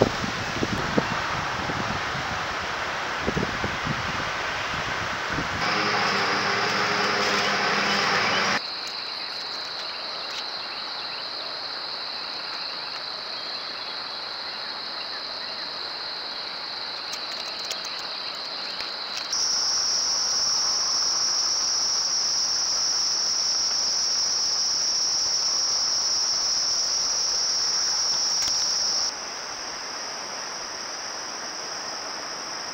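Outdoor trail-camera audio cut from several clips. First comes a rustling haze with a few clicks. Then a steady, high-pitched insect drone takes over, its pitch jumping to a new steady note at each cut between clips.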